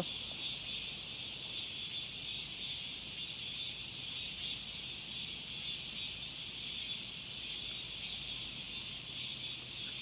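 Many summer cicadas calling together: a steady, high-pitched drone that holds without let-up.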